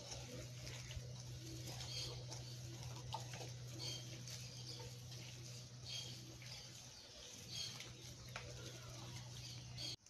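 Faint background birds calling in short, repeated notes over a steady low hum, with only soft hand-mixing noise from a bowl of kibbe mixture.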